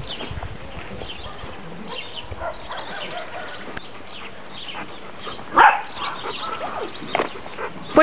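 A dog barking: one loud bark about five and a half seconds in, then a couple of shorter barks near the end.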